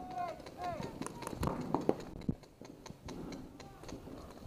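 Paintball markers firing, a quick string of sharp pops starting about a second in and lasting about a second.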